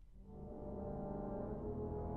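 College wind ensemble playing: out of a brief hush, a new sustained low chord enters and swells in loudness, then holds.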